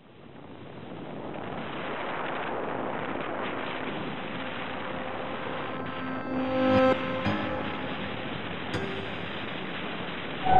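Steady rush of air noise in flight, fading in from silence over the first two seconds, with a few piano-like notes coming in about six to seven seconds in.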